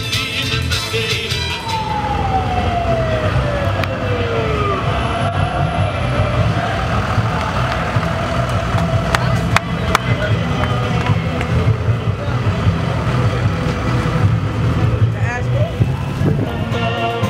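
A siren glides steadily down in pitch over about three seconds near the start, with a short wavering siren sound again near the end, over the steady hubbub of a large crowd.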